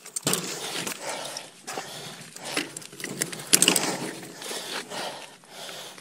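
Derailed mountain-bike chain being worked back onto the chainring by hand, with scattered metallic clicks and rattles from the chain and cranks. A person breathes hard throughout.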